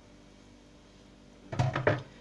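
Quiet room tone, then a short cluster of knocks and thumps about one and a half seconds in, from kitchenware being handled on the counter.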